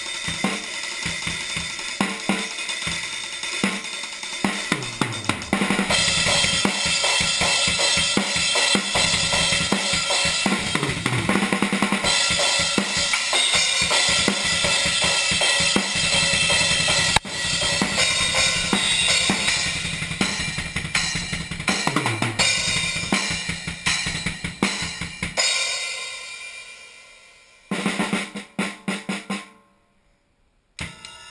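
Drum kit played in a fast warm-up jam: quick kick-drum runs on a double bass pedal under snare, tom and ringing Zildjian cymbal hits. The playing gets dense about six seconds in, thins out near the end with the cymbals ringing down, then a few last hits before it cuts off.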